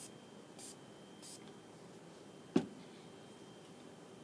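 Two short hisses from a Garnier Fructis Sleek & Shine glossing spray being sprayed onto hair, about half a second apart, followed about two and a half seconds in by a single sharp click.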